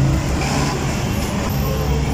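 Road traffic passing close by: a steady low engine rumble of heavy vehicles with tyre noise.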